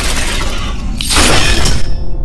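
Cinematic title-reveal sound effect: a deep bass rumble under a noisy swell that breaks into a bright, glass-like shattering crash about a second in.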